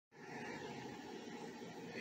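Faint steady background noise with a low hum: outdoor ambience, with no distinct event.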